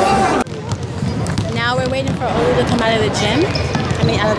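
Basketball bouncing on the hardwood court of a large indoor arena, with children's high voices calling out.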